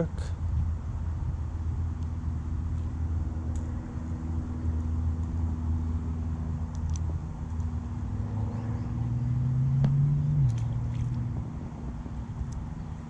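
Motor vehicle engine running steadily with a low hum. Its pitch rises from about eight seconds in and drops suddenly at about ten and a half seconds. A few faint clicks come over it.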